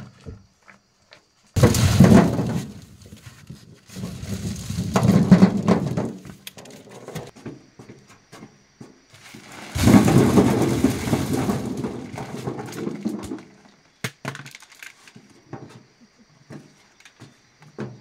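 Husked ears of dried corn tipped from a woven basket clattering into a wooden truck bed, in three loud pours that each start suddenly, with scattered knocks between them.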